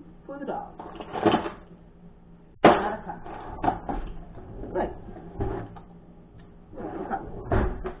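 Kitchen handling noises: irregular clatter and knocks like a cupboard door and containers being handled. The loudest is a sharp knock about two and a half seconds in, with another burst near the end.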